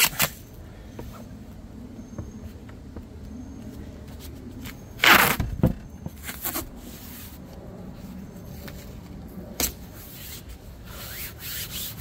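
Adhesive tape being pulled off the roll in a loud rip about five seconds in, with shorter rips later, as it is pressed over the top edge of a car door's window glass.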